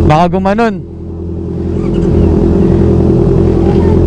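Motorcycle engine idling steadily close to the microphone, an even low hum.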